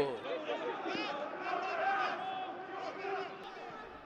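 Distant shouts and calls of footballers on the pitch, several voices overlapping and echoing faintly in an almost empty stadium, growing quieter toward the end.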